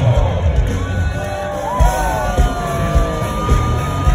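Live rock band playing over a stadium PA, recorded from within the crowd: a steady drum beat under a held, bending melody line that starts about a second in.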